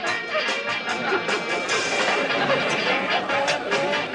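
Upbeat dance music playing on a phonograph, with a quick, steady beat of about four strokes a second.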